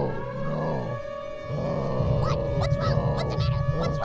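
Noisy intro of a hardcore punk record: sliding, warbling tones over a pulsing low drone, with sharp crackles breaking in from about halfway.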